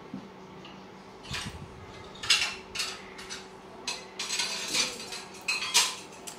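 A metal whisk clinking and scraping against a small stainless-steel pot while egg is scrambled in it, in a run of irregular clinks, the loudest near the end.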